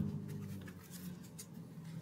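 Faint handling of a tarot card deck: light scratching and small ticks of cards being held and cut, over a low steady hum.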